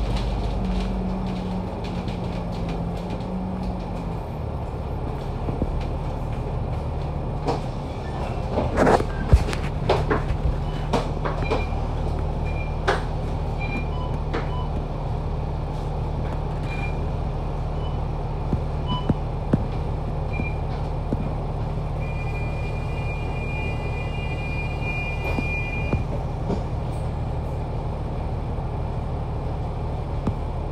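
Diesel engine of an SMRT MAN A95 double-decker bus heard from inside the cabin: its note drops as the bus slows about four seconds in, then it runs low and steady as the bus sits in traffic. Knocks and rattles come around nine to thirteen seconds in, and a steady high beep sounds for about four seconds in the second half.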